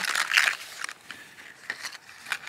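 Plastic blister packs of fishing lures crinkling and rustling as they are handled and lifted out of a cardboard box: a burst of crackly rustling in the first second, then a few light clicks.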